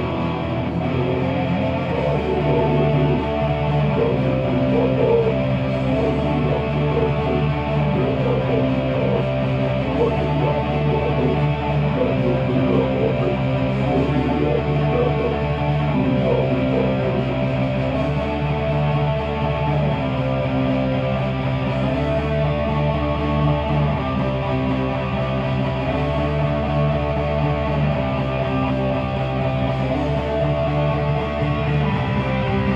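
Heavy metal played live on an electric guitar over a drum machine backing, loud and continuous, with chord changes in a pattern that repeats about every four seconds.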